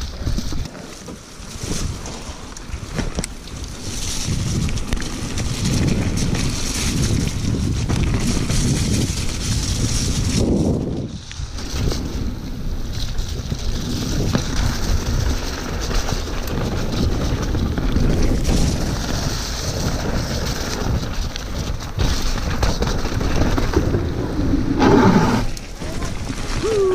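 Wind buffeting the microphone over the rumble and rattle of a mountain bike descending a wet, muddy trail, its tyres running through slippery mud. The noise eases briefly about eleven seconds in, then carries on.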